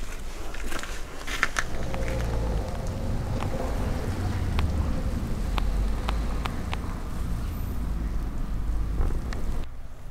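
Outdoor background noise: a steady low rumble with a few faint clicks, which cuts off abruptly near the end.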